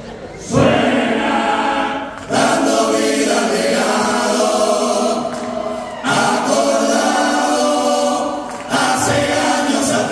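A murga chorus of many men's voices singing together in harmony through stage microphones, in four phrases that come in about half a second, two seconds, six seconds and nine seconds in.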